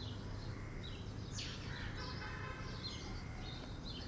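Birds chirping: a run of short falling calls, over a steady low hum.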